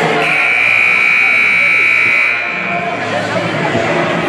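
Gym scoreboard buzzer sounding one long, steady, high-pitched buzz that stops about three seconds in, over crowd chatter.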